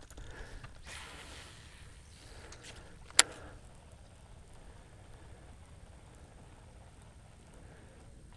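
Faint, steady wind and water noise on open water, broken once about three seconds in by a single sharp click.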